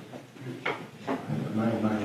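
A pause in a man's talk, broken by a short, sharp knock about two-thirds of a second in and a fainter one near one second. His voice starts again near the end.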